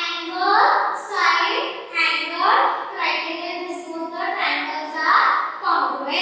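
A woman's voice in lively, high-pitched phrases about a second each, with rising pitch at the start of each phrase.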